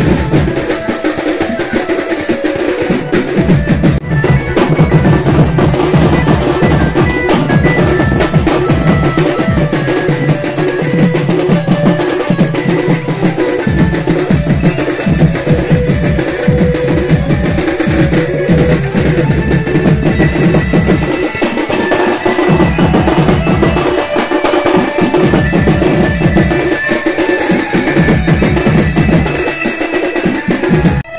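Loud drum-led music: rapid, dense drumming over a low bass line that comes and goes in blocks of a few seconds.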